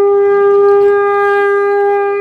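Conch shell trumpet blown in one long, steady, loud note.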